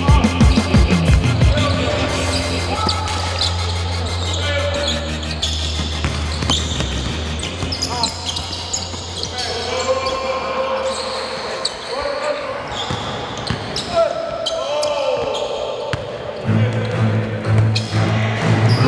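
Basketball bouncing on a gym floor, with players' voices in the echoing hall, under a mixtape beat whose deep bass drops out about seven seconds in and comes back near the end.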